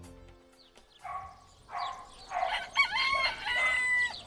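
Rooster crowing: a few short calls, then one long, drawn-out crow over the last second and a half.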